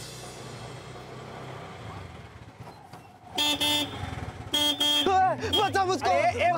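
Auto-rickshaw engine running with a steady low hum, then two short horn honks about three and a half and four and a half seconds in.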